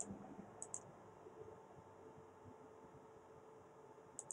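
Two computer mouse clicks, each a quick double tick, one at the very start and one about 0.7 s in; otherwise near silence.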